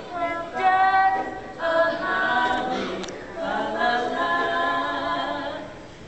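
A group of voices singing a cappella, a melody in held notes with no instruments.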